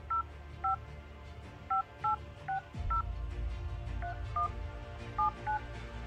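Smartphone keypad playing touch-tone dialling beeps as a phone number is keyed in: ten short two-note beeps at an uneven tapping pace.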